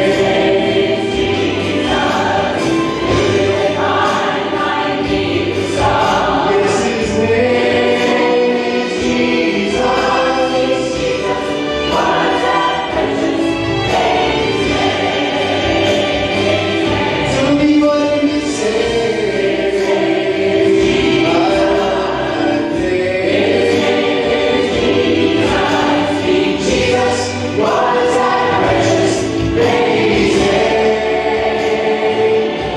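Mixed church choir of men and women singing a gospel song, in continuous harmony.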